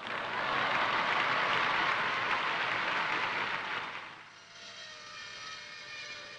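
A cricket crowd applauding, the clapping dying away about four seconds in.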